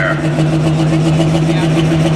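Diesel engine of a John Deere pulling tractor running steadily while hooked to the sled before its pull, its speed stepping up slightly right at the start and then holding.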